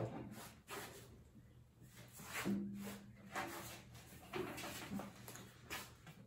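Faint knocks and rustling as a bowl of potatoes is picked up and handled, with a short low hum from a man's voice about two and a half seconds in.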